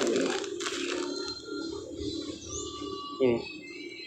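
Clear plastic bag packed with soil and rice husk crinkling faintly as it is handled, over a steady low hum. A short bird chirp comes about two and a half seconds in.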